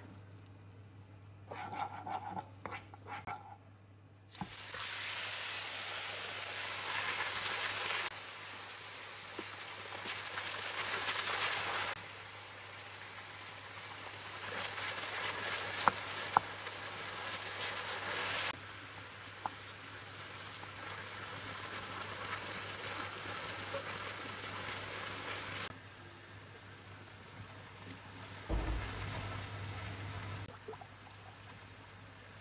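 Pork belly pieces sizzling and frying in a hot pan of caramel sauce, starting about four seconds in and running on steadily as they are stirred with a wooden spoon. There are two sharp knocks of the spoon against the pan about halfway through.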